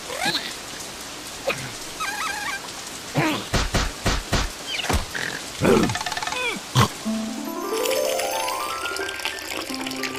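Cartoon larva characters squealing and grunting in short bending cries, with a few sharp knocks against the glass bottle, over rain. From about seven seconds in, a stepped run of tones climbs steadily in pitch as the bottle fills with rainwater.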